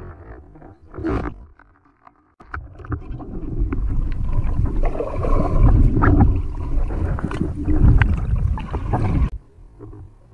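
Underwater sounds of a spearfishing dive: a short sharp burst about a second in, then, after a brief silence, several seconds of loud water noise full of clicks and knocks from the speargun and a speared fish being handled, which cut off suddenly near the end.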